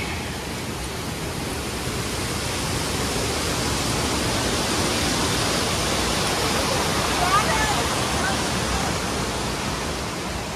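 Rushing water from a themed waterfall, a steady even hiss that grows louder through the middle and eases off near the end.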